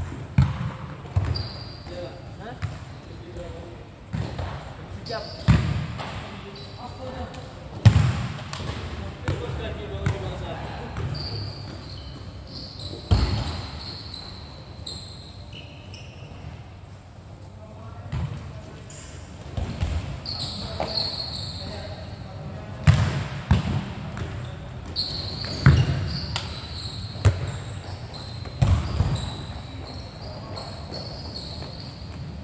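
A futsal ball being kicked and hitting the court, with about a dozen sharp thuds spread irregularly and a short echo after each under the hall roof. Voices and a few brief high squeaks come in between the thuds.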